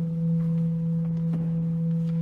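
Church organ holding a single low, pure, steady note without change, giving the pitch for the sung dialogue that opens the communion liturgy.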